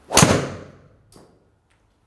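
Driver clubhead striking a teed golf ball: one sharp, loud crack that rings off over about half a second, from a well-struck, near-centred hit. A much fainter knock follows about a second later.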